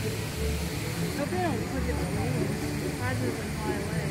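People talking indistinctly in the background, short stretches of voices scattered through, over a steady low outdoor rumble.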